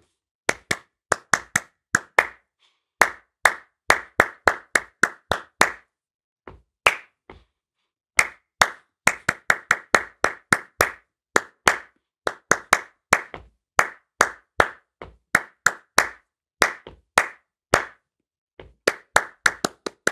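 One person clapping a written rhythm in 3/4 time: uneven groups of sharp hand claps mixing eighths, triplets and quick sixteenth-note runs, with a near-pause a few seconds in.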